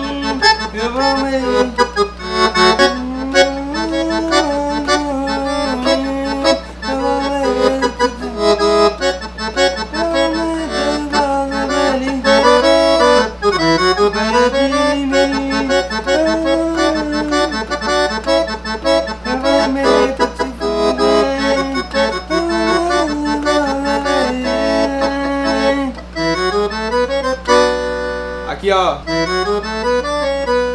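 Roland V-Accordion (digital accordion) playing a continuous swung forró accompaniment of rhythmic, octave-doubled notes in the right hand (the 'oitavado' style), with a fuller chord and a quick run near the end.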